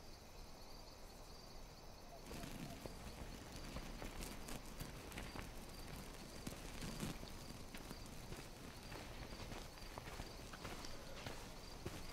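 Faint night-time outdoor ambience from a film soundtrack, rising slightly about two seconds in, with scattered small clicks and knocks.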